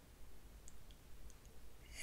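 Near silence: quiet room tone with a low hum and a few faint small clicks around the middle.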